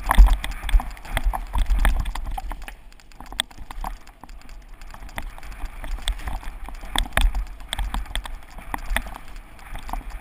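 Mountain bike rolling fast down rough forest singletrack, rattling and clicking in quick irregular knocks as it bounces over the trail, over a low rumble. It is loudest in the first two seconds and again about seven seconds in.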